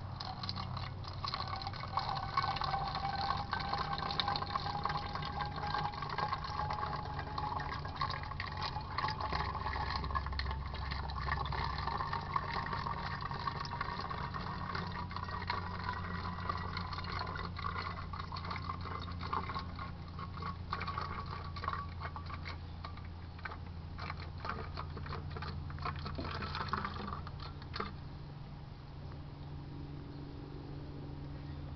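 Water pouring in a steady stream from a plastic measuring jug into a plastic bottle. The hollow fill note rises slowly in pitch as the bottle fills.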